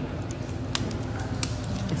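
Steady restaurant room hum with faint background voices, broken by two sharp light clicks about two-thirds of a second apart.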